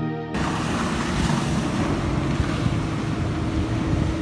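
Music cuts off just after the start. Then comes a steady rush of wind and splashing water from a sailing yacht moving through choppy sea, with wind buffeting the microphone.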